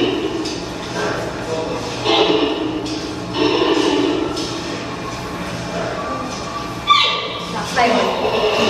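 Giant panda calling in short pitched bursts, four separate calls, the last about seven seconds in the sharpest and brightest.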